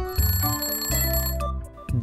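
Alarm-clock ringing sound effect, about a second and a half long, signalling that the countdown timer has run out, over background music with a steady bass line.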